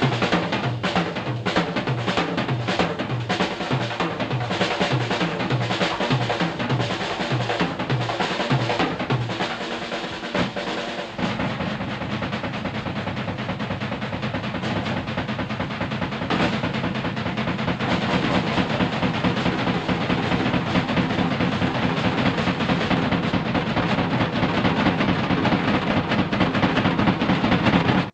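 Live rock drum solo on a full drum kit, with drum rolls, snare and bass drum. A repeating low tom and bass-drum figure gives way to denser, busier drumming about eleven seconds in. The recording cuts off suddenly at the end, mid-solo.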